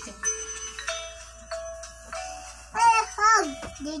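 Music playing from a mobile phone's small speaker: steady held notes like a chime for the first couple of seconds, then a high voice singing a few short notes near the end.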